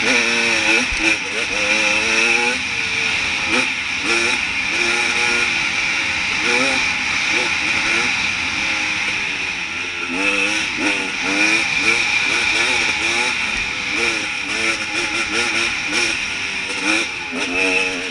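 Enduro dirt bike engine revving up and dropping back over and over as the throttle is opened and closed.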